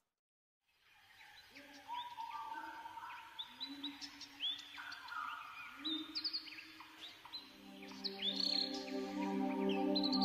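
Silence for about the first second, then birdsong of short upward-sweeping chirps over soft ambient spa music. The music's held tones swell in from about seven seconds in.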